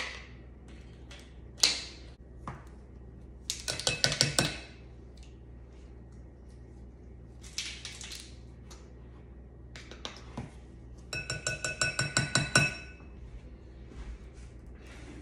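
Measuring spoons and a baking-powder can clicking, clattering and clinking on a kitchen counter while baking powder is measured out. Near the end comes a fast run of ringing clinks.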